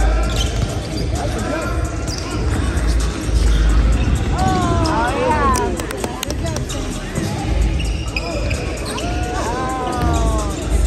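Several basketballs bouncing on a hardwood gym floor during warm-up layup drills, with music playing and indistinct voices underneath.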